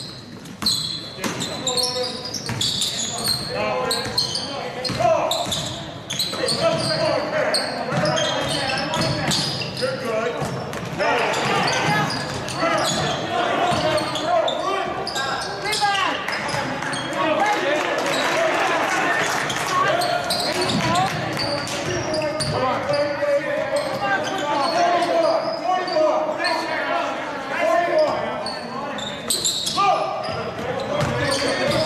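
A basketball being dribbled on a hardwood gym floor during live play, with players and coaches shouting, all echoing in a large gymnasium.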